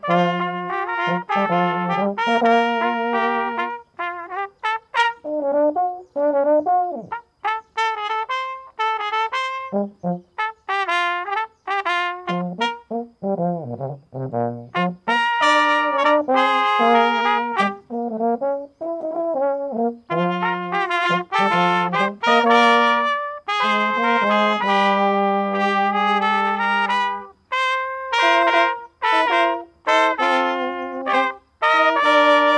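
Brass trio of two trumpets and a tenor horn playing a piece in several parts, held chords alternating with passages of short, separated notes.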